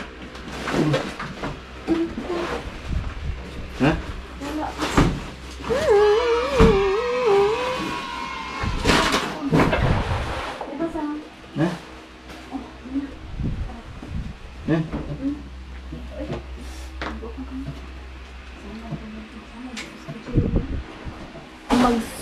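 Scattered knocks and bumps of a large refrigerator being shifted by hand, with people talking and exclaiming throughout and a low steady rumble underneath.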